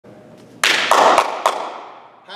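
A short run of about four hand claps, loud and close, starting about half a second in and ringing on in a large echoing gym hall before fading.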